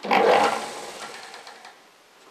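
A metal marking point scratching a circle into a wooden blank as it spins on a wood lathe: a rough scrape, loudest at the start and dying away over about a second and a half.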